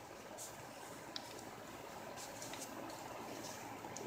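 Faint handling of paper and laminated notebook pages: a few light rustles and ticks over a low steady hiss.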